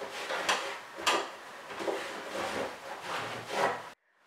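A damp cloth wiping and rubbing a toy barn's plastic roof, in a series of separate scrubbing strokes, roughly one or two a second.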